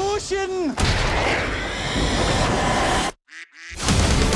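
A sudden gunfire blast and explosion tearing a wooden building apart, with crashing wreckage for about two seconds. The sound then drops out to near silence for a moment, with a short duck quack.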